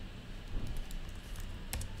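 A few faint computer keyboard keystrokes, short separate clicks, scattered through the second half.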